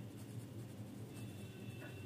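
A pen scratching faintly on paper as words are written by hand.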